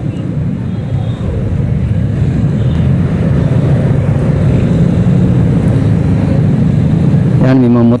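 Motor scooter riding at crawling speed in traffic, its small engine giving a steady low rumble with road noise.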